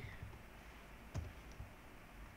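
A single sharp click from a computer mouse or keyboard about a second in, over faint room hiss.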